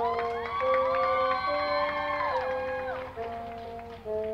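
High school marching band's brass playing long held notes that step up and down in pitch, with several notes falling away together about two and a half seconds in.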